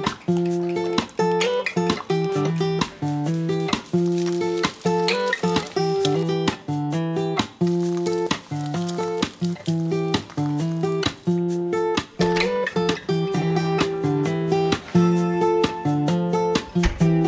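Background music: acoustic guitar strumming chords in a steady, even rhythm.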